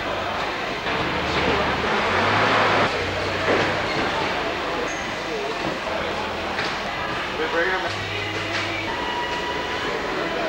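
Steady rumble and hum of a large plant warehouse, with indistinct voices in the background and a louder rush of noise about two to three seconds in.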